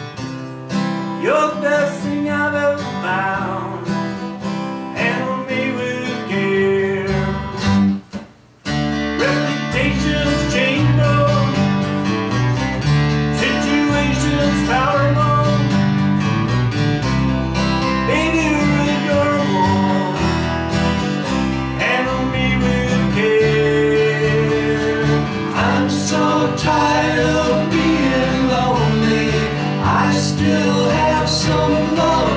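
Live acoustic trio playing a song: three acoustic guitars strummed and picked together, with singing. The sound drops out briefly about eight seconds in, and the low end is fuller after that.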